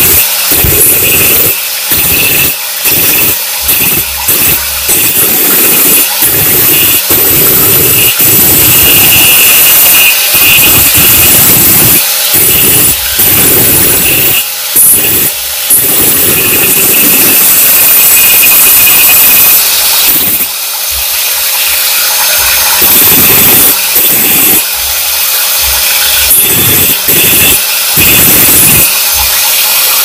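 Handheld electric angle grinder running at speed with a steady high whine while its disc cuts a white floor tile. The grinding noise keeps dropping out and coming back as the disc bites into the tile and eases off.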